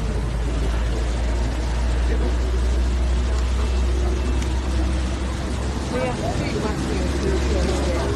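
Steady low rumble with indistinct voices in the background, a few words standing out about six seconds in.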